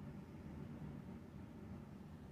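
Quiet room tone with a faint, steady low rumble and no distinct events.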